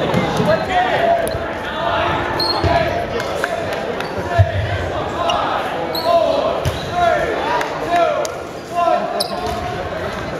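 Dodgeballs thudding on a hardwood gym floor and against players during a game, the loudest thud about four and a half seconds in, with players and spectators shouting, echoing in the gym hall.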